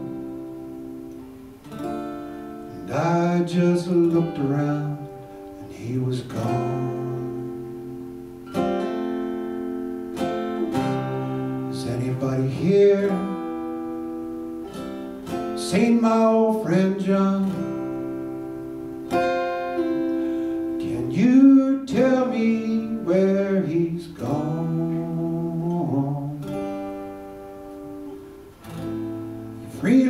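Solo acoustic guitar playing a slow folk ballad, with a man's voice singing over parts of it.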